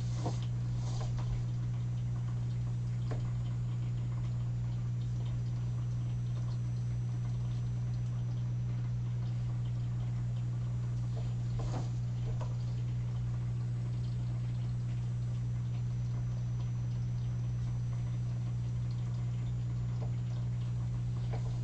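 A steady low electrical hum, with a few faint short scrapes near the start and again about halfway, from the marker and paper moving on the desk.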